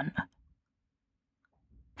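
Near silence in a pause between a narrator's spoken sentences: the last of a word trails off at the start, and a faint mouth click comes shortly before the voice resumes.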